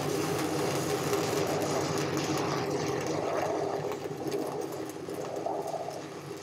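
Stick-welding arc of an Eagle 606 hardfacing electrode burning: a steady crackling sizzle with a faint hum underneath, easing a little over the last couple of seconds.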